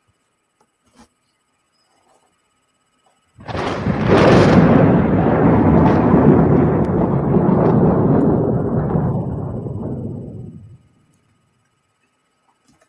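A loud thunder-like rumble that starts suddenly about three and a half seconds in, holds for several seconds and fades away near the end.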